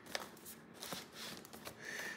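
Faint rustling and a few light taps of hands handling and turning a cardboard product box.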